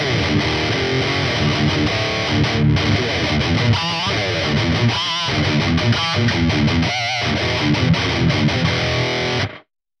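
High-gain, heavily distorted electric guitar riff played through a Neural Amp Modeler full-rig capture of a PiVi 5150 Mark II, boosted by an NA808 Tube Screamer-style plugin and noise-gated. It cuts off suddenly near the end.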